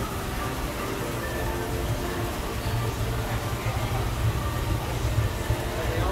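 Steady low hum of an aquarium store's room noise with faint background music.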